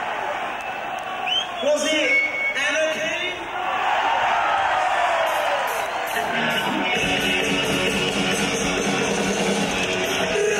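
Crowd shouting and cheering, then the band's rock intro comes in, with distorted electric guitar chords and drums taking over in the second half.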